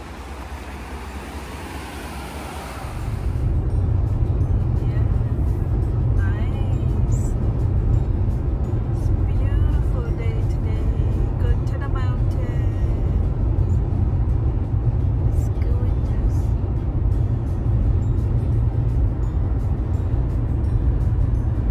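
Road noise inside a car cabin at highway speed: a loud, steady low rumble that starts about three seconds in, after a short stretch of even outdoor hiss.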